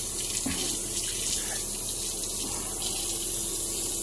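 Bathroom sink faucet running steadily while a razor is rinsed under it, with a faint knock about half a second in.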